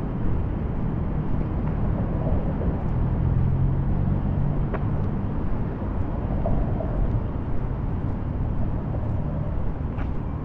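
Steady low rumble of city street traffic with a faint engine hum, and one brief tick about halfway through.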